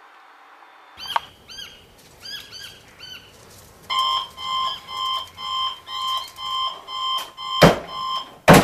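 Birds chirping, then from about four seconds in an electronic alarm clock beeping about twice a second. A loud thump comes near the end.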